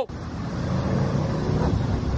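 Pickup truck engine idling with a steady low rumble while stopped at a drive-through menu board.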